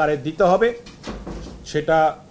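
A man speaking, with a short pause about a second in that holds a soft low rumble.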